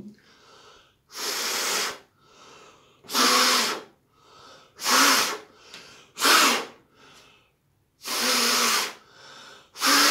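A man blowing hard through a white surgical face mask at a tealight candle flame, about six forceful exhalations a second or two apart with fainter in-breaths between them. Air blown through the mask, testing how much passes; the flame stays lit.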